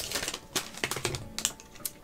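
Hands handling a small packaged item, a run of light, irregular clicks and taps.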